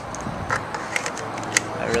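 Hands handling a video camera and the power adapter that fits its battery slot: a scatter of small plastic clicks and taps, about half a dozen in two seconds.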